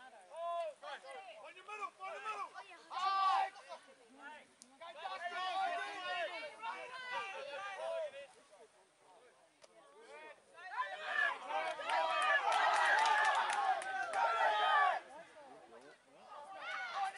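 Sideline crowd and players calling out, several voices overlapping. The shouting swells into a dense, loud mass of voices from about eleven seconds in and drops off sharply just before the end.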